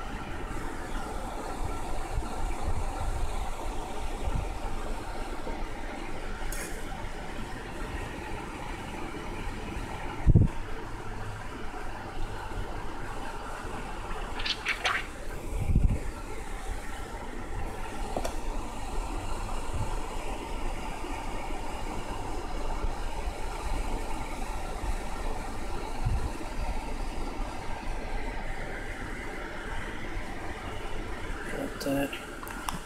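A steady rushing noise with faint steady tones, broken by a knock about ten seconds in and another about sixteen seconds in, with a short scrape just before the second.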